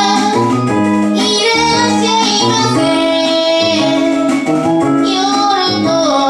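A woman singing a song live into a microphone, accompanied by a keytar with a moving bass line underneath.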